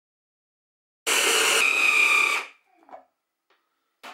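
Braun hand blender with its chopper attachment running in one burst of about a second and a half, the blade whirring through frozen banana chunks and orange juice over a steady motor whine, blending them into soft banana ice cream. It cuts off, and a few faint knocks follow.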